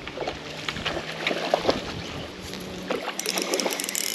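Jumbled rustling and light splashing, then a run of rapid fine clicking from the spinning reel in the last second.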